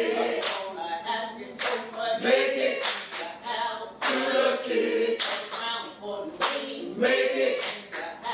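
A group of voices singing a hymn unaccompanied, with a steady hand clap on the beat about once a second.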